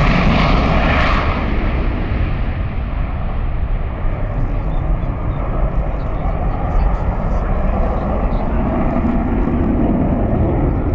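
Twin General Electric J79 turbojets of an F-4E Phantom II in afterburner as the jet climbs away: loud jet noise whose hissing top end fades about a second in, leaving a steady low rumble.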